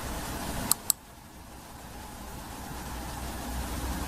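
Two quick computer mouse clicks about a second in, over a steady low background hum.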